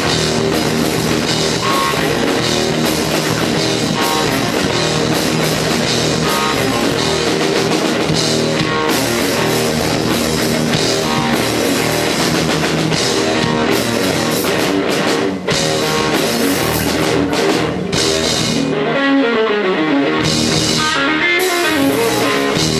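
Live rock music: an electric guitar played on a red Flying V over a drum kit. About three-quarters of the way in, the bass and drums thin out under a guitar line that slides down in pitch.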